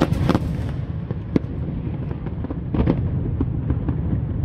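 Aerial firework shells bursting overhead: a quick cluster of sharp bangs at the start, then single reports about a second and a half in and again near three seconds, over a steady low rumble.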